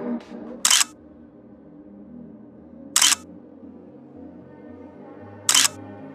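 Three camera shutter clicks, about two and a half seconds apart, over quieter background music.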